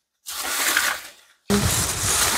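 Dry banana leaves crackling and rustling as a hand pushes through them to reach a bunch of green bananas. The crackle comes in two spells with a short break, and the second is louder.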